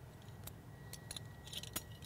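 Faint, scattered metal clicks from an aluminium rescue double pulley being handled as loops of rope are fed into it.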